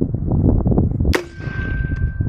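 A tennis ball launcher built on an AR lower fires once, a single sharp bang a little past halfway through. A faint steady high tone lingers for a moment after the shot.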